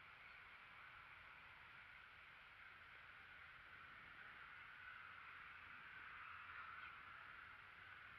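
Near silence: faint, steady outdoor background with no distinct sound.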